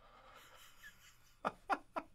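A man's laughter: faint breathing at first, then a quick run of short laughs, about four a second, starting near the end.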